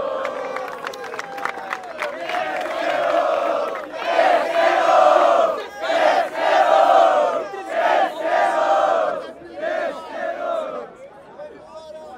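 A rap-battle crowd shouting and chanting together in reaction to a punchline. It opens with one long shout, then comes in loud rhythmic bursts about once a second, and fades out near the end.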